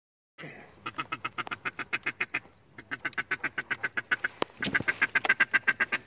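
A duck call blown close by in rapid runs of short quacks, about eight a second, in three runs with brief breaks, to bring in teal.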